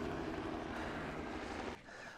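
A steady, low engine drone with a light hiss that cuts off suddenly near the end.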